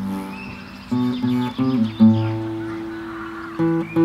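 Classical acoustic guitar being fingerpicked in a slow improvisation: a few plucked low notes and chords about a second in, one left to ring and fade, then a quicker run of repeated plucked notes near the end.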